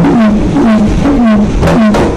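A pair of conga drums played by hand in a steady, fast rhythm, about four strokes a second. The two drums ring at slightly different pitches, each tone dipping a little after the stroke.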